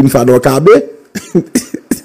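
A man's voice: a short run of speech, then a few short clipped sounds in the second half.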